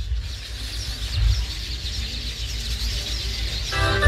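Birds chirping over a low rumble. Near the end, keyboard music starts.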